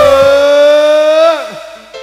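A voice through the stage PA wailing one long, loud note. It swoops up at the start, holds nearly level, and drops away about a second and a half in.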